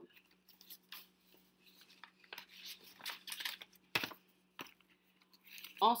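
Stiff folded paper rustling and crackling as it is handled, with a sharp tap about four seconds in.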